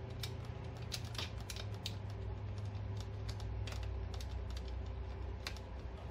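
Light scattered clicks and ticks of small metal nuts and fingers working as nuts are started by hand onto studs, a few sharper clicks standing out, over a steady low hum.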